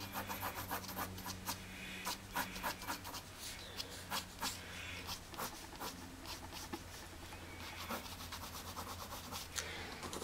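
Pencil scratching across paper in short, irregular back-and-forth shading strokes, darkening an area of hair in a drawing. The strokes are faint, with a low steady hum under them.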